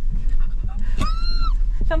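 Steady low rumble of the 4x4's engine crawling at low revs. About a second in, a brief high-pitched squeal lasting half a second: a nervous cry from the driver as the vehicle leans over the axle-twist.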